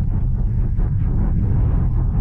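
Steady road and wind noise inside the cabin of a Voyah Free electric car travelling at high motorway speed, a deep even rumble with no engine note.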